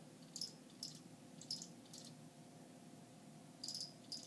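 Male black field cricket chirping in about five brief, high-pitched chirps at uneven intervals. It is a cricket just beginning to sing, still practising its song.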